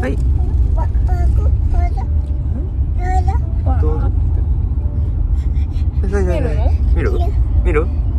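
Steady low rumble of a taxi's engine and road noise heard inside the cabin, with short voice sounds on top, among them a toddler imitating Donald Duck's voice.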